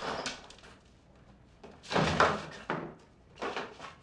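Bumps and clatter of a man moving hurriedly about a room and dropping into a wheelchair. The loudest clatter comes about two seconds in, followed by a few smaller knocks.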